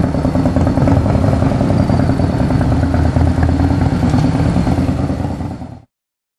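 Cruiser motorcycle engine running at low speed with a steady, fine pulsing beat; the sound fades out quickly near the end.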